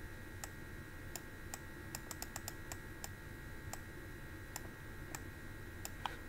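Faint, irregular small clicks, about a dozen, bunched together around the middle, over a faint steady electronic whine.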